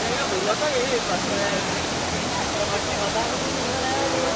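Waterfall rushing steadily over rock, with indistinct human voices calling over the noise, most clearly in the first second.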